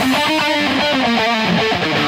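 A break in an instrumental heavy-metal track: a guitar alone picks a run of single notes, with no drums or bass.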